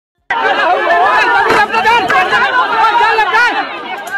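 Several people's voices talking over one another, starting about a quarter second in.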